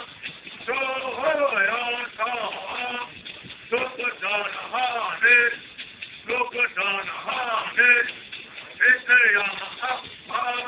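A group of men singing a Cupeño clan song together in unison. Their voices rise and fall in short phrases with brief breaths between.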